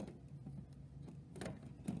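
A few light clicks of plastic Lego pieces being handled, one at the start and two more near the end, over a low steady hum.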